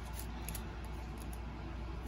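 Trading cards being handled and slid against one another, a faint soft rustle over a steady low hum.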